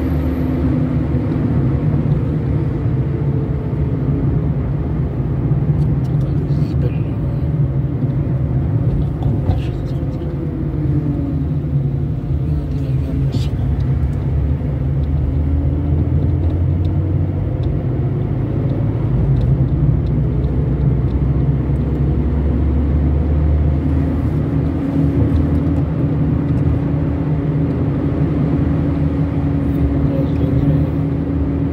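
Car engine and road noise heard from inside a moving car, a steady low hum whose pitch rises and falls with the car's speed.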